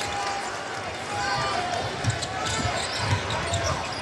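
Basketball dribbled on a hardwood court, a run of low bounces from about two seconds in, over arena crowd noise.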